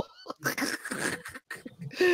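Quiet, breathless laughter: short faint gasps and snickers with no words.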